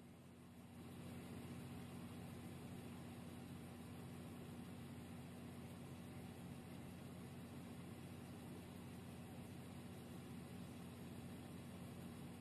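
Steady low hiss with a faint hum underneath, slightly louder from about a second in, with no distinct event standing out.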